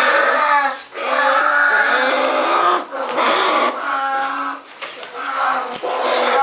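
Young bear cub crying: a string of loud, long wailing calls, each a second or two, with short breaks between.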